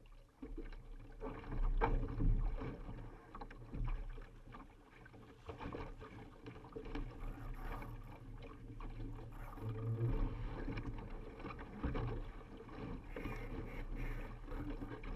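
Water rushing and splashing along the hull of a Laser sailing dinghy under way, picked up close by a deck-mounted camera, with a low rumble and scattered knocks that come and go irregularly.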